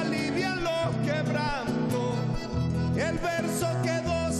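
Live vallenato: a man singing over a button accordion and a classical guitar, with sustained accordion chords under the melody.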